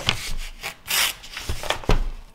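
A sheet of paper rubbed and slid across a tabletop by hand, with a burst of rustling about a second in and two soft thumps near the end as the sheet is pressed flat.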